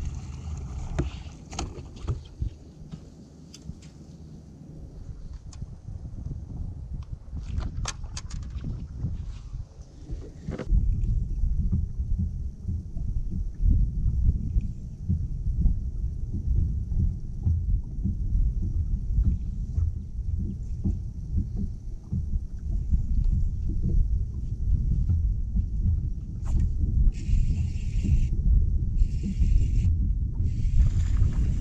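Wind buffeting the microphone on an open boat deck: a steady low rumble that gets louder about a third of the way in. There are a few sharp clicks and taps early on, and two short hissing bursts near the end.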